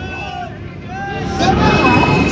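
Busy street sound: indistinct chatter of several voices over traffic engine noise, getting louder about halfway through.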